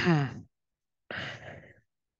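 A person sighing: a voiced sigh falling in pitch over the first half-second, then a breathy exhale just over a second in.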